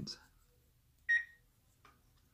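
A single short electronic beep, a clear high tone about a second in.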